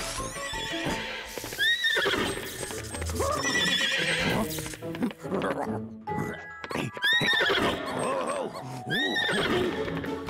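Cartoon soundtrack: background music with short, high rising-and-falling squeaky calls from the cartoon bunnies, mixed with horse-like neighing and clip-clop hoof sound effects.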